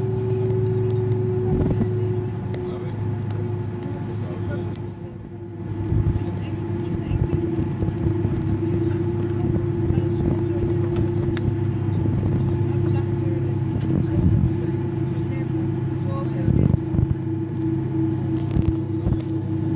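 Cabin sound of an Airbus A330-203 taxiing, its General Electric CF6 engines at idle: a steady low hum under a held whine, with a few short thumps.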